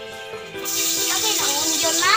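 Sliced onion dropping into hot oil in a wok and sizzling loudly, the sizzle starting suddenly about half a second in, over background music.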